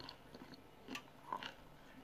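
Faint crunching as compressed cornstarch chunks are chewed, a few short soft crunches about a second in and just after.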